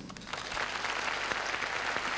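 Concert audience applauding, a dense, steady clapping that builds up over the first half second.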